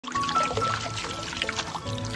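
A stream of water pouring and splashing onto a waterproof pillow protector, the water beading and running off the fabric, under background music with held notes and a bass line.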